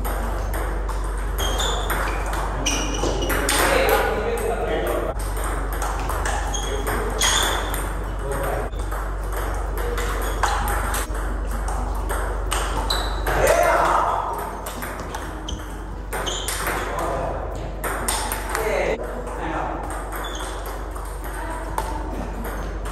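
Table tennis rally: a plastic ball clicking sharply, again and again, on the bats and the table as it is hit back and forth.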